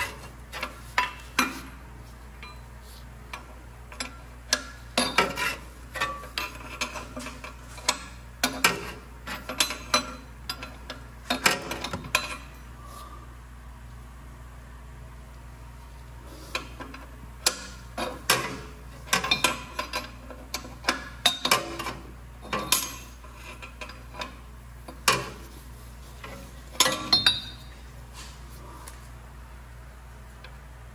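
Seven-eighths wrench clicking and clinking against metal as a fastener under the truck is tightened by hand: irregular metallic clicks in short runs, with a pause about halfway.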